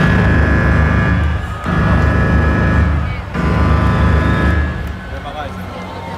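Concert intro soundtrack played loud over an arena PA: three long, deep swells with a steady drone above, each about a second and a half, easing off near the end.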